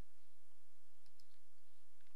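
A few faint computer mouse clicks, spaced irregularly, over a steady low background hum.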